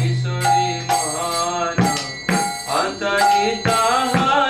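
A devotional Bengali bhajan sung by a male voice with mridanga drum accompaniment: sharp strokes on the drum's treble head and a long, low bass note that rings out at the start and dies away after about a second.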